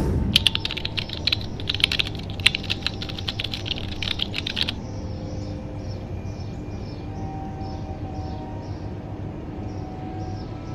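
A dense, rapid run of sharp clicks like keyboard typing, likely a sound effect added in editing. It lasts about four and a half seconds, stops abruptly, and leaves a faint steady background.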